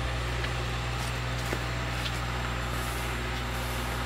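Steady low hum of a generator engine running, unchanged throughout.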